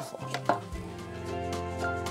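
A small uncapping tool scratching and poking through the wax cappings of a honey frame, a few short scraping clicks, breaking the seal so the honey can be spun out. Background music plays underneath.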